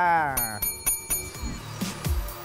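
Small metal desk bell struck about four times in quick succession, each strike ringing with a bright sustained tone. It follows the tail of a man's drawn-out falling vowel, and electronic music with low beats comes in after the rings.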